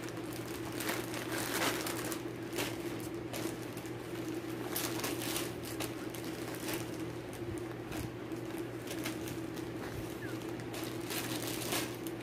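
Irregular rustling and crinkling of stitching project bags and fabric being handled, over a steady low hum.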